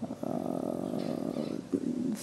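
A woman's drawn-out hesitation sound, a creaky "э-э" with a rough, grating texture, lasting about a second and a half, followed by a short low sound just before speech resumes.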